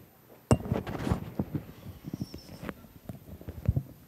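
Microphone handling noise: a sharp knock about half a second in, then a run of irregular small knocks and thumps as the equipment is moved about.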